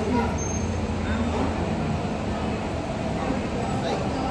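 Steady low rumble of a Boeing 737's jet engines at taxi power as the airliner rolls past, with faint voices of people in the background.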